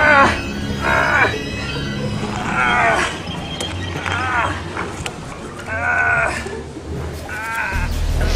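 A man's wavering, bleat-like cries, six short ones spaced about a second and a half apart, over low background music.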